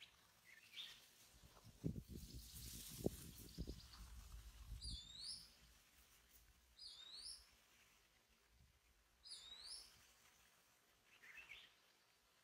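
A bird calling faintly: three identical short whistles, each dipping and then sweeping up, about two seconds apart, with fainter rising notes near the start and the end. A few low thumps and a rustle come between about two and five seconds in.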